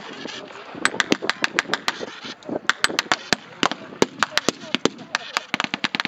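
Scattered blank rifle fire from a line of bolt-action rifles: many sharp shots at irregular intervals, several a second at times, with voices in the background.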